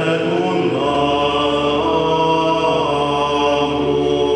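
Choir singing liturgical chant in long, slowly moving sustained notes, with a low held tone joining about a second in.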